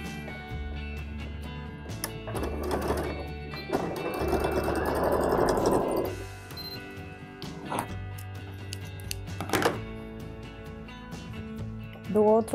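Janome electric sewing machine stitching a short seam in two runs, the second and louder one lasting about two seconds, over steady background music. A couple of sharp knocks follow later.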